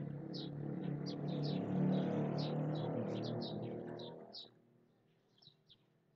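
Small birds chirping in quick repeated notes, under a louder low rumble that swells about two seconds in and fades out about four seconds in.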